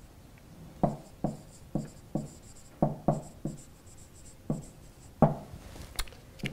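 Marker pen writing on a whiteboard: about ten short, separate strokes and taps, with faint high squeaks from the marker tip between them.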